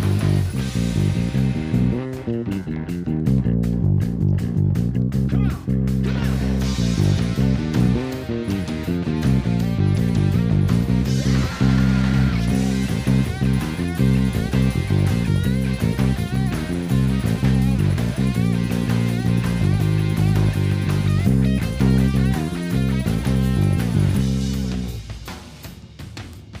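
Squier electric bass playing a blues-rock bass line along with the band's recording, with a voice singing over it for a moment near the middle. The sound falls away near the end.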